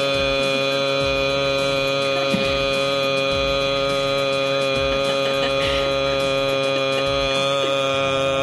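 A single long held musical tone, rich in overtones and unchanging in pitch, like a sustained drone or chord.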